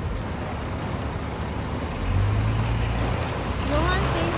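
Steady running noise of a vehicle, a rushing haze with a low hum that swells for about a second midway; a child's voice comes in near the end.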